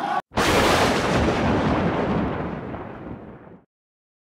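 A sudden loud boom-like impact sound effect for a logo sting: a burst of noise that dies away over about three seconds and then cuts off abruptly. It starts just after stadium crowd chanting stops short.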